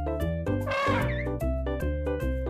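A cat's meow, one wavering call about half a second long, starting a little after the half-second mark, over cheerful music with a steady bouncy beat.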